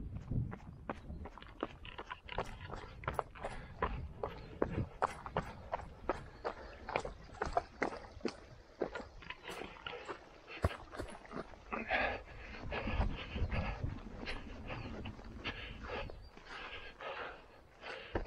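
Footsteps over stony, grassy ground, with many irregular clicks and crunches, and wind buffeting the microphone.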